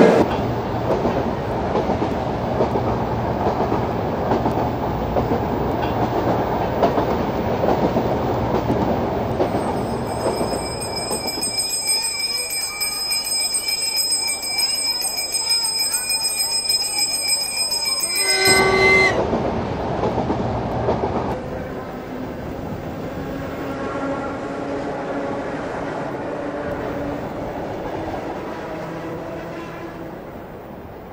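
Electric train passing close by, a steady rumble of wheels on the rails for about the first ten seconds, giving way to a high, steady ringing. A short horn-like tone sounds about eighteen seconds in, and fainter tones follow as the sound dies away.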